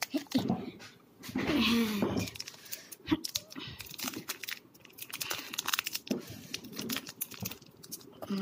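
Foil Pokémon booster pack wrapper crinkling and crackling in short bursts as hands grip and pull at it, trying to tear it open, with one sharp click a little past three seconds in. A voice is heard in the first couple of seconds.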